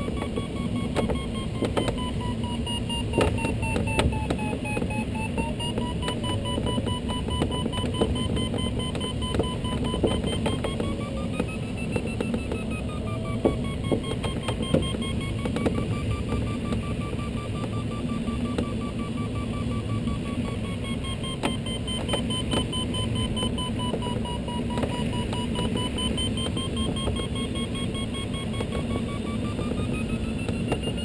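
Glider's electronic variometer beeping in quick pulses, its pitch drifting slowly up and down with the strength of the climb, over a steady rush of air around the cockpit.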